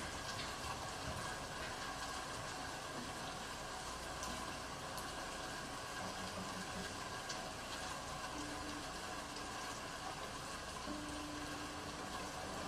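A steady faint hiss with soft, long-held low cello notes: a quiet note about six seconds in, a brief one a little later, and a longer held note near the end.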